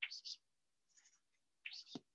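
Chalk scratching on a chalkboard in short strokes as an arrow is drawn: one at the start, a faint one about a second in, and another near the end.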